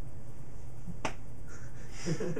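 A single sharp click, like a finger snap, about a second in, over a steady low hum.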